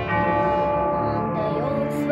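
Recorded orchestral backing track playing a slow instrumental introduction: sustained chords with a bell-like struck chord at the start that rings on.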